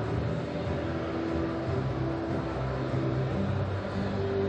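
Steady low background sound of a large hall, a hum-like bed with sustained low tones that shift in pitch every second or so.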